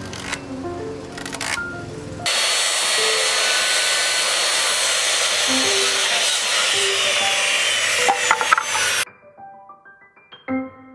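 Handheld circular saw cutting across a pressure-treated pine board, starting about two seconds in, running steadily for about seven seconds and cutting off suddenly. Piano background music plays under it and on after it.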